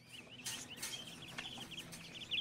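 Caged canaries chirping faintly in quick runs of short, high notes, with a few sharp clicks among them.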